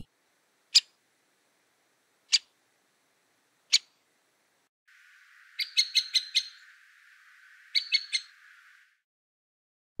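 Great spotted woodpecker's short 'kik' call: three single calls about a second and a half apart. Then, over a faint background hiss, a quick series of about six calls followed by three more.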